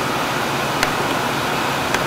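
Steady room hiss with two small sharp clicks, one a little under a second in and one at the very end, from a pipette and a plastic pipette-tip box being handled.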